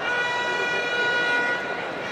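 A horn sounds one long, steady note that starts abruptly and fades out about a second and a half in, over background noise.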